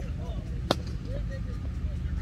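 Cricket bat striking the ball: one sharp crack about two-thirds of a second in, as the batsman plays the delivery.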